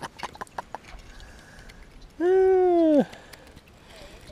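A small bass being landed on rod and reel: quick irregular clicks and light splashing as the fish is brought in. A little after two seconds in comes a single pitched vocal call, about a second long, that dips in pitch as it ends; it is the loudest sound.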